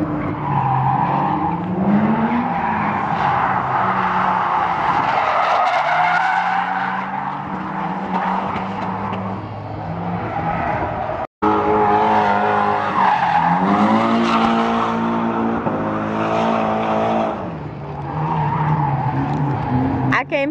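Drift cars practicing on a track: engines revving up and down while tyres squeal through long slides. The sound cuts out suddenly about eleven seconds in and picks up again with an engine revving up.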